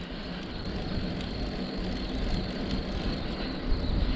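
Steady wind rushing over the microphone of a camera on a moving bicycle, with a low, uneven rumble from the buffeting.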